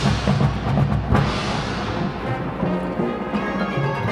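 Marching band playing its field show: drum and timpani hits drive the first second, a crash about a second in rings away, and the band then holds sustained notes.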